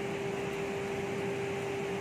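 Steady machine hum: one constant tone over an even hiss, unchanging throughout.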